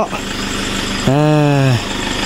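Pickup truck engine idling steadily.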